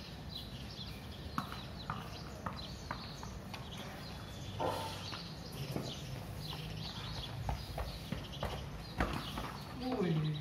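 A few sharp knocks or taps, several of them about half a second apart, over a steady low background hum, with birds chirping.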